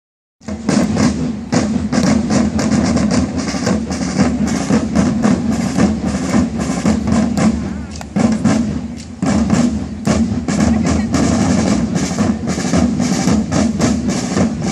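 Parade drums of a costumed drum corps beating a fast, steady marching rhythm, with a brief lull about eight seconds in.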